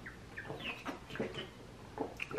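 Gulping and swallowing while drinking from a glass bottle: a quick series of about six small wet clucks in the throat.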